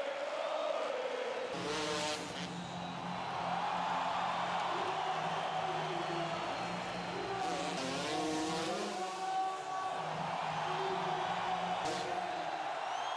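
A freestyle motocross bike's engine comes in about a second and a half in and revs, its pitch rising and falling twice, over steady noise from a large crowd.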